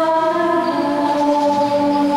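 Voices singing a slow liturgical chant at Mass in long held notes that step between pitches, led by a woman singing into a microphone.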